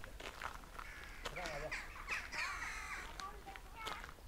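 Footsteps crunching on a gravel path at a walking pace, with several loud, pitch-bending calls between about one and three seconds in.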